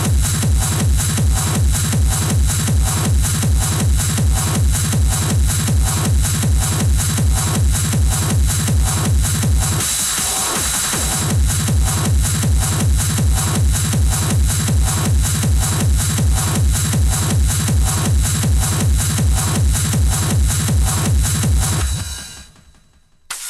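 Schranz hard-techno DJ mix: a fast, steady four-to-the-floor kick drum under dense high percussion. The kick drops out for about a second and a half near the middle, then comes back in.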